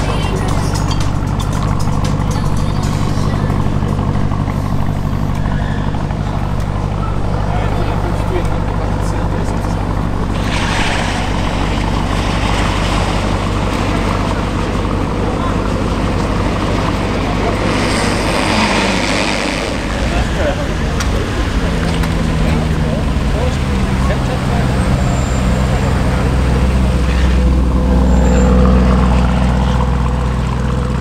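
Lamborghini Urus twin-turbo V8 idling steadily. About two-thirds of the way in the engine note changes as the SUV pulls away, growing louder near the end.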